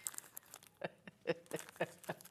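Quiet, stifled laughter in short irregular breathy bursts, mixed with light clicks from hands handling things on a desk.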